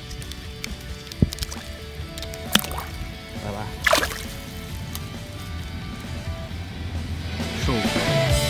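Background music, with water splashing and dripping as a trahira is lowered into shallow water on a lip grip and released. There are a few sharp splashes, the biggest about four seconds in, and the music grows louder near the end.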